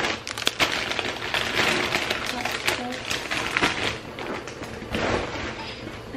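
Groceries being unpacked by hand: packaging and bags rustling and crinkling, with several sharp knocks as items are set down on a counter.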